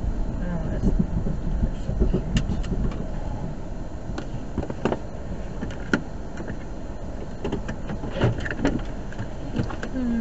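Car engine and cabin rumble as the car rolls to a stop and idles, with scattered irregular clicks and knocks inside the cabin.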